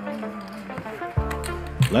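Music: a held chord, then a beat with heavy bass comes in just past a second in.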